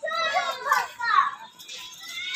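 Young child's high-pitched voice calling out in a few short bursts, with children playing around it.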